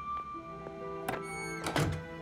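Soft background music, with two thunks a little over a second in, the second one louder: a door being pulled shut.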